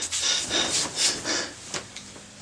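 A large white cloth sheet rustling and swishing as it is grabbed and pulled off, in a run of short noisy strokes that fade out near the end.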